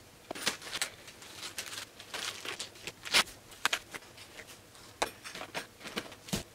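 Small plastic dog-care items being handled and sorted: rustling packaging and a series of light clicks and knocks as tubs and bottles are picked up and set into a wicker basket, the sharpest knock about three seconds in.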